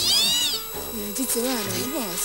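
A single high-pitched, meow-like call, rising and then falling in pitch over about half a second at the very start. A woman's voice speaking Japanese follows it.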